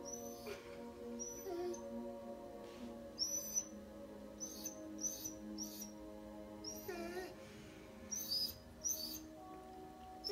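Dog whining in a string of about ten short, high-pitched squeaks that fall in pitch, with a lower drawn-out whine about seven seconds in, while it watches a cat.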